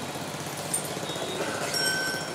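Pause between spoken phrases filled by a steady low background hiss of the room and sound system. A few faint, brief high tones sound in the second half.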